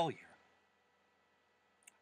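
A man's word trailing off, then a pause of near silence with a faint steady hum, broken just before he speaks again by a single brief click, like a lip or tongue click as the mouth opens.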